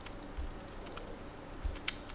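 A chipmunk chewing and nibbling a piece of food held in its paws: a scatter of small, sharp, irregular clicks, the sharpest just before the end, with a couple of faint low bumps.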